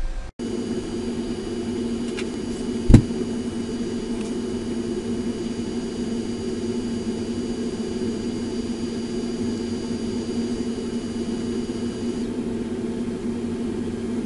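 Steady whirring hum with thin high steady tones that stop a couple of seconds before the end, and one sharp click about three seconds in.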